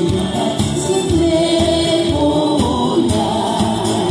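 A group of singers singing a Korean song together live, with strummed acoustic guitar accompaniment and long held notes.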